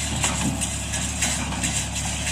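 New Holland T55 tractor engine running steadily, pulling a Massey 20 square baler as it picks up rice straw, with the baler's mechanism working behind it.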